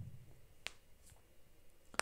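Quiet room tone broken by one sharp click about two-thirds of a second in, and another brief click at the end.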